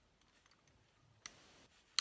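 Crop-A-Dile eyelet punch being adjusted by hand: a sharp metal click about a second in, a faint rustle after it, and another click at the end.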